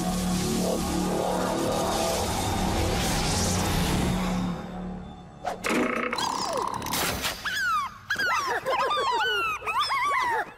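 A loud rumbling blast over dramatic music, fading out about four and a half seconds in. After a few sharp clicks comes a chorus of quick, high, falling chirps from many cartoon slugs.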